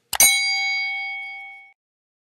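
A click sound effect followed at once by a bright bell ding that rings out and fades away over about a second and a half: the notification-bell chime of a subscribe-and-notify end card.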